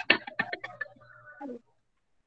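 Faint, broken voices and a few short crackles over a video call with a low hum, cutting out to dead silence about one and a half seconds in.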